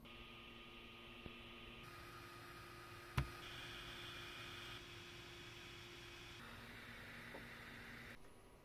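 Faint room tone and hiss with a low hum, changing in character at several abrupt jumps, and one sharp click about three seconds in.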